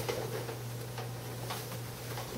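A few light, scattered knocks and clicks as someone gets up and moves about holding an acoustic guitar, over a steady low hum.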